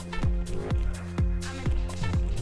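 Background electronic dance music with a steady kick drum, about two beats a second, over a held bass line.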